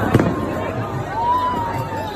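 A single sharp firework bang just after the start, over the din of a crowd, followed by a long, high drawn-out tone in the second half.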